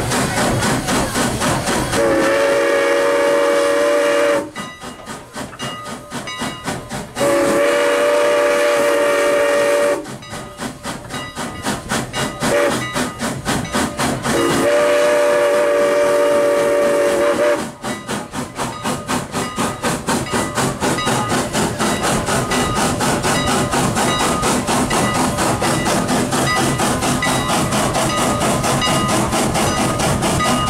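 Steam whistle of Canadian National No. 89, a 2-6-0 steam locomotive, blown in three long blasts of two to three seconds each, for a road crossing. Between and after the blasts the locomotive chuffs in quick, even exhaust beats as it works along.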